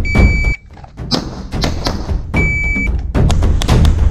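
Music with a heavy percussive beat. Twice a short, high, steady electronic beep sounds over it, once at the very start and again a little past the middle.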